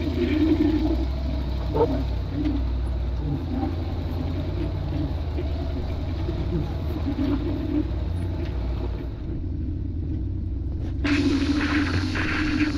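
Ford Bronco buggy's engine running at low revs, a steady low rumble, as the buggy crawls over slickrock. About eleven seconds in, a hiss of wind on the microphone joins it.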